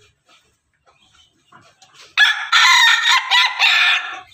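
A pelung–bangkok–ketawa crossbred rooster crowing: one loud crow that starts about halfway through and lasts nearly two seconds, in three linked phrases.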